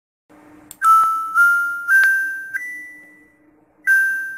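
Bell-like struck metal notes in a short intro melody: four notes stepping upward one after another, the last ringing out, then a new note striking just before the end.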